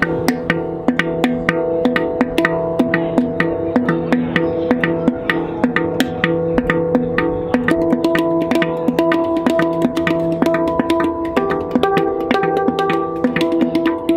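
Handpan (steel hang-style drum) played with the hands in a steady rhythm of about four taps a second, its tuned notes ringing on over one another. The notes being played change about halfway through and again a few seconds later.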